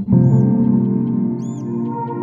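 Background music of sustained ambient synth chords, shifting to a new chord after a brief dip right at the start, with two short high chirping notes.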